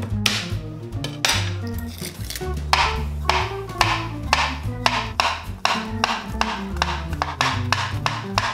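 Chef's knife chopping garlic cloves on a wooden cutting board: a run of quick knocks, coming faster in the second half, under background music with a steady bass line.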